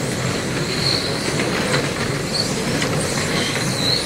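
Several electric GT radio-controlled cars racing around a carpet track. Their brushless motors and gears make a steady whirring noise, with short high whines that rise again and again as cars accelerate.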